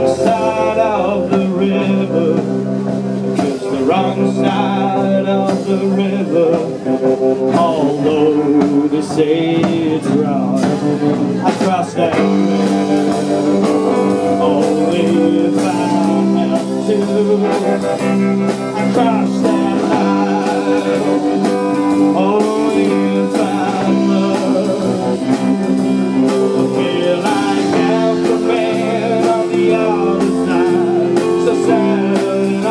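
Live sixties-style garage rock band playing, with electric guitar and bass under a man singing into the microphone.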